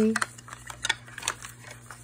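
Light, scattered clicks and taps from a hollow plastic toy capsule half being handled. There are about half a dozen sharp clicks over two seconds, with a short bit of a woman's voice right at the start.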